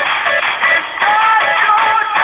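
Rock music with an electric guitar played along to the song's recording.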